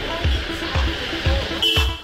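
Background music with a steady beat, a bass drum about twice a second under a pitched melody.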